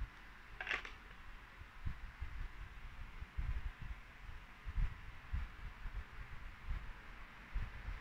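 Faint handling noise: soft low bumps and knocks as a smartphone is picked up and moved about on a bed, over a quiet steady background hiss, with one brief soft rustle-like noise about a second in.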